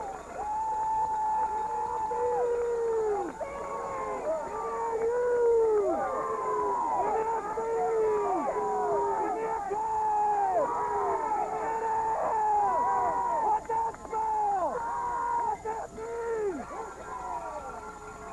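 A crowd of spectators yelling long, drawn-out calls that fall off in pitch at the end, many voices overlapping.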